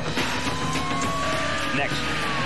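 Vehicle noise from a car chase, with a long high-pitched tone that slowly rises and then begins to fall near the end, and a lower tone sliding down beneath it.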